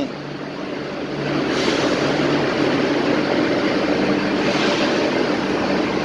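Steady mechanical drone of machinery, a loud even noise with a low hum under it, growing a little louder about a second and a half in.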